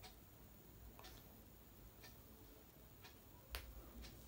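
Near silence with faint ticks about once a second, and one sharper click with a low thud near the end.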